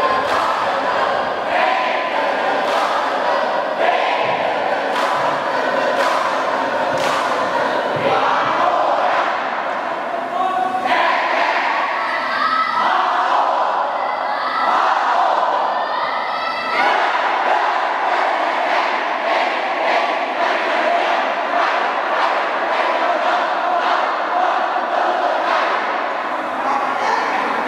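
A large group of students shouting and chanting together, many voices at once, loud and sustained.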